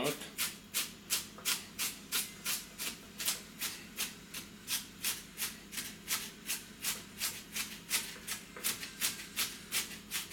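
Chef's knife dicing onion on a plastic cutting board: steady, crisp chopping strokes, about three or four a second.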